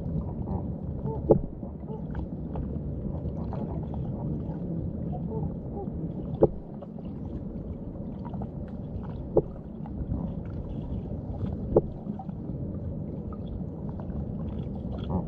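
Underwater sound in shallow water: a steady low rumble of moving water, broken by four sharp clicks spread through.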